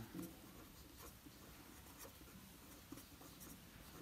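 Faint scratching of a felt-tip marker on paper as a line of handwriting is written, in short irregular strokes.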